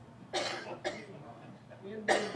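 A person coughing twice, the two coughs about half a second apart.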